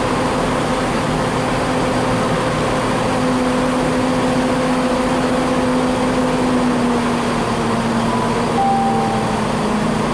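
Engines of a Class 175 diesel multiple unit running steadily as it pulls away, a loud drone that drops slightly in pitch about two-thirds of the way through.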